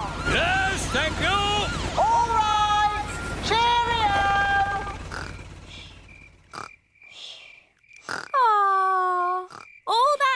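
Cartoon pig characters' voices calling out over a low steady hum from a cartoon rescue helicopter, which fades away about six seconds in. Then a few short sharp sounds and one long falling call near the end.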